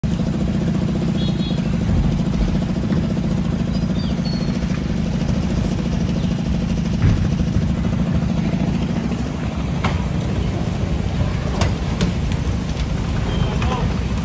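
Vehicle engines idling in stopped street traffic, a close engine's low steady rumble dominating and easing off after about nine seconds. A few sharp clicks or knocks sound in the second half.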